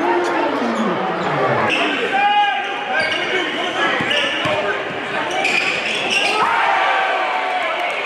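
Basketball game sound in a gym: crowd voices and shouting, a ball bouncing on the hardwood court, and short high sneaker squeaks about two seconds in and again near six seconds.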